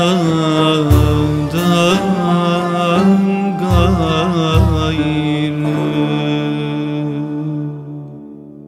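Closing bars of a Turkish Sufi ilahi in makam Uşşak and düyek rhythm: a traditional ensemble plays a slow melody over drum strokes, which stop about halfway through. The ensemble then holds a long final note that fades out at the end.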